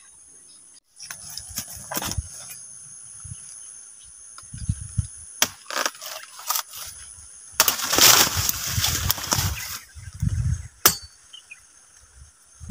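A bolo knife chopping at a banana plant's stalk: a few sharp chops, then a loud rustle and crackle of banana leaves lasting about two seconds as the bunch is cut and brought down, followed by a thump and a click.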